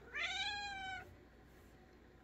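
Domestic cat meowing once, shortly after the start: a single call of about a second that rises quickly at the onset and then slides slowly down in pitch.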